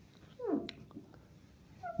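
A short voice-like call about half a second in, gliding steeply down in pitch, and a brief rising tone just before the end, in an otherwise quiet room.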